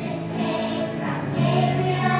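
A children's choir singing, holding sustained notes, in a large church.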